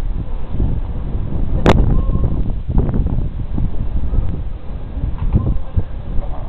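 Wind buffeting the microphone: a loud, irregular rumble, with one sharp click about two seconds in.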